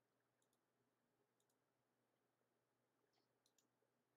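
Near silence on a video call, with a few faint, short clicks.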